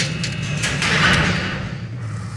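Steel pen gate clanking: a few sharp metallic knocks, then a short rushing noise about a second in, over a low steady rumble.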